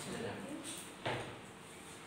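Quiet room noise with a single soft knock about a second in.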